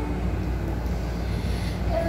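A steady low rumble of background noise between sung phrases, with no clear notes standing out.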